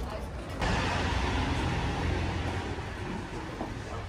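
City street traffic noise: a loud rushing sound with a low rumble that comes in suddenly about half a second in and eases off near the end, with voices underneath.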